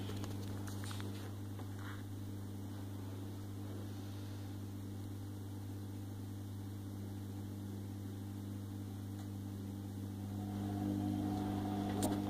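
A steady low electrical or mechanical hum, a little louder in the last two seconds.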